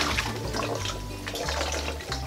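Water swirling and gurgling as it drains through the joined necks of two plastic bottles, spinning into a vortex in a tornado-in-a-bottle.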